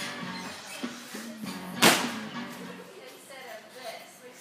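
One sharp, loud impact a little under two seconds in: a gymnast's hands regrasping the uneven bars' wooden rail after a Jaeger release. Background music and voices run underneath.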